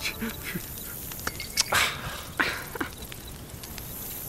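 A campfire crackling with small scattered clicks, a brief rush of noise near the middle, and two short animal-like calls soon after.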